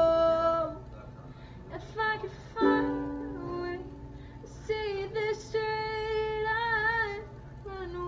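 Woman singing live to her own ukulele: a loud held note that ends under a second in, a few sparse strums, then a long sung line with vibrato toward the end.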